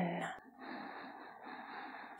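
A woman's voiced breath trails off right at the start, then a faint, steady breath sound follows for about a second and a half.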